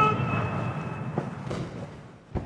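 A military band's held brass chord dying away with reverberation, followed by a couple of faint thuds.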